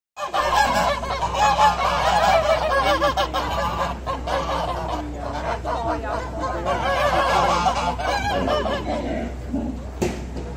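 A flock of domestic geese honking at feeding time, many loud calls overlapping without a break and thinning out near the end.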